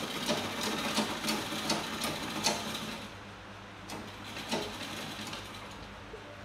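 Sewing machine stitching in a fast run of rhythmic clicks for about three seconds, then stopping, followed by a low hum and a couple of single clicks.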